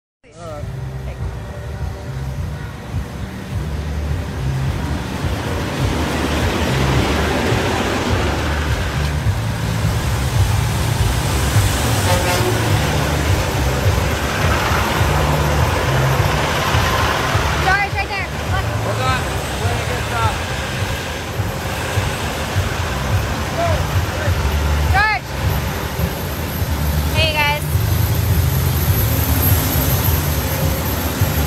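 Busy street din: idling diesel semi-truck engines rumbling under the chatter of a large crowd, with a few brief sliding tones in the second half.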